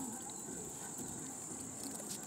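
Insects trilling steadily, a continuous high-pitched hum outdoors in the grass.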